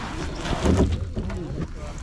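Indistinct voices of nearby kayakers over the water and paddling noise of a kayak, with wind on the microphone. The loudest moment is a low rumble just under a second in.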